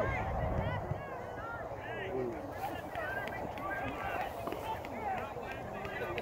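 Distant, overlapping shouts and chatter from youth soccer players and sideline spectators carrying across an open field, with no single voice clear.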